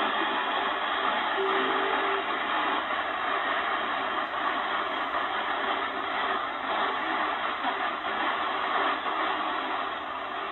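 Shortwave static and hiss from the speaker of a Chinese-clone Malahit DSP SDR receiver, noise reduction off, as it is tuned across the 49 metre band. A steady rushing noise with thin, muffled-sounding band-limited audio and only faint traces of a station.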